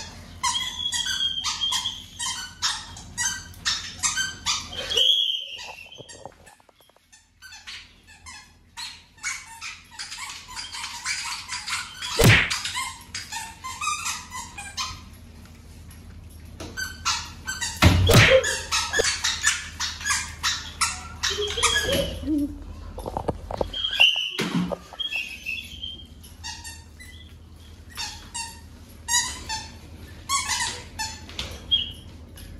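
Rapid series of sharp clicking and squeaking noises, repeated in runs through the stretch, made by the dodging players so the blindfolded seeker can hear where they are. Two loud thuds land about 12 and 18 seconds in.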